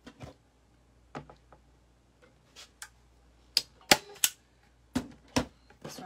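Scattered sharp clicks and knocks from a hand staple gun and other craft tools being handled on a table. The loudest come as three quick clicks a little past halfway, then two more near the end.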